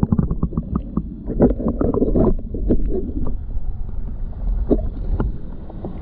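Muffled underwater sound from a camera held just below a swimming pool's surface: low rumbling water movement against the housing, a quick run of clicks in the first second, then scattered knocks.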